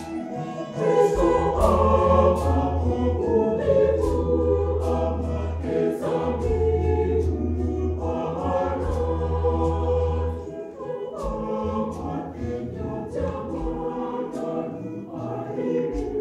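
Mixed choir singing in several parts, getting louder about a second in, over a steady beat of traditional drums, with arched harps also being played.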